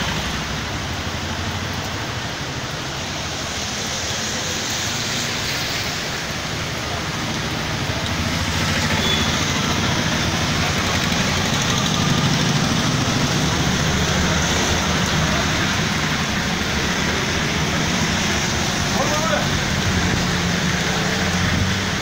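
Steady heavy rain and wind noise, with vehicle engines running and passing slowly on the wet road; a little louder from about eight seconds in.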